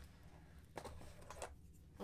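Near silence with a few faint light clicks about halfway through: small handling sounds from an open zippered sewing kit as a tailor's pencil is pulled from its holder.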